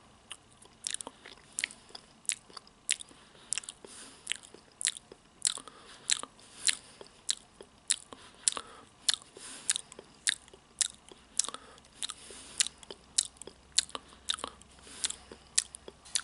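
Close-up ASMR mouth sounds: short wet clicks and lip smacks, irregular, about two a second.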